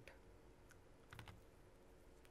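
Near silence: room tone, with a few faint clicks about a second in.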